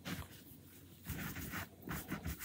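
Faint scratchy rubbing of a round wax applicator worked back and forth over wooden cutout letters. It is very quiet for the first second, then a few soft strokes follow.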